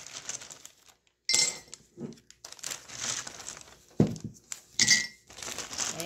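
Small plastic counting bears dropped by the handful into a ceramic mug, clattering against it in several separate bursts, with the crinkle of a plastic zip bag as they are scooped out.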